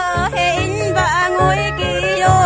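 A Ba Na folk song: a high solo voice singing, sliding and bending between notes, over a steady bass beat and backing accompaniment.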